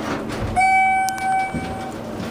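Schindler MT 300A elevator's electronic chime sounding one long steady tone of about a second and a half, starting about half a second in, with a short click partway through.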